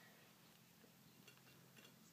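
Near silence: faint room tone with a low steady hum and a couple of faint ticks in the second half.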